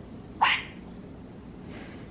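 Talking Donald Duck plush toy playing one short, rising Donald Duck-voice squawk about half a second in.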